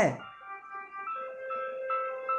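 Soft background music under the sermon: a slow melody of bell-like keyboard notes, with a long held lower note coming in about a second in.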